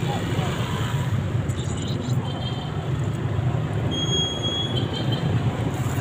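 Low, steady rumble of street traffic, with a faint high whine briefly about four seconds in.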